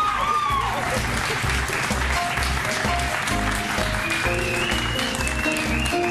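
Studio audience applause over upbeat music from a Roland XP-80 synthesizer keyboard, with a steady beat and held synth notes coming in about two seconds in. A voice calls out excitedly at the start.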